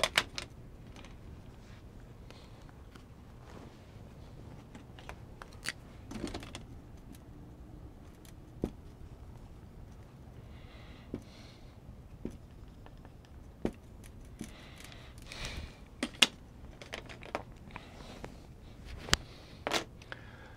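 Dry-erase marker working on a whiteboard: scattered sharp taps and clicks of the marker and its cap, with a few short scratchy strokes about halfway through and again near the three-quarter mark. A low steady hum runs underneath.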